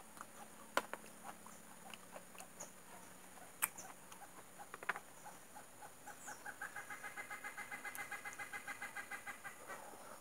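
Close-miked eating of soft, ripe jackfruit bulbs, with a few sharp wet mouth clicks. From about six seconds in, an animal outdoors calls in a rapid run of short, pitched, clucking-like notes, about five a second, which swell and then fade just before the end.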